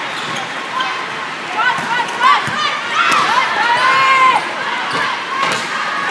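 Athletic shoes squeaking on a sport-court floor as players move during a volleyball rally: a string of short squeaks, then one longer squeak about three seconds in. Sharp hits of the volleyball are also heard, the clearest about two and a half seconds in and near the end, over a hall full of voices.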